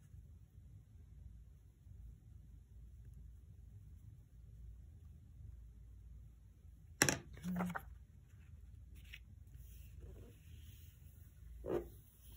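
Quiet room tone with a low hum, broken about seven seconds in by one sharp clack, a paintbrush handle set down on a plastic palette tray.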